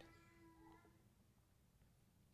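Near silence: room tone during a pause in speech, with a faint steady tone fading out in the first second.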